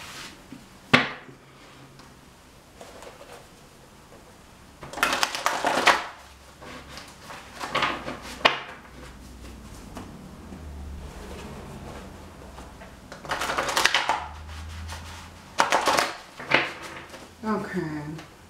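A deck of cards shuffled by hand in four short bursts, with a sharp click about a second in.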